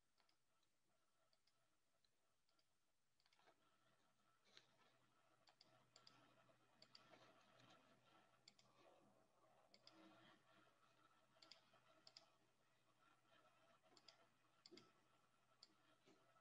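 Near silence with faint computer mouse clicks, scattered irregularly from about three seconds in.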